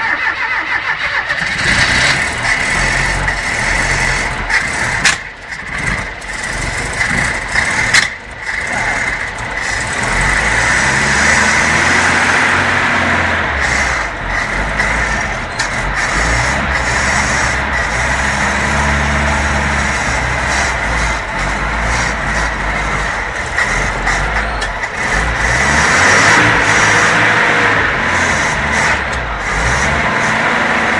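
Chevrolet Chevy 500's carburetted 1.6 four-cylinder engine starting, uneven and dipping twice in the first ten seconds. It then runs steadily, its revs rising and falling several times as the throttle is worked by hand at the carburetor.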